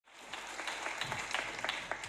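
Audience applause: many hand claps over a steady wash of clapping, fading in at the very start.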